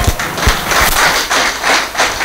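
Scattered hand clapping from a small audience, a quick run of irregular claps several a second, with a couple of low thuds in the first half second.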